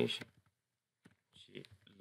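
A few faint computer keyboard key clicks in the second half, as text is typed into a code editor, after a spoken word ends at the start.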